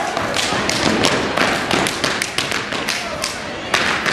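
Step team stepping on a wooden gym floor: a fast run of sharp stomps and body slaps, several a second, that thins out near the end before one hard hit.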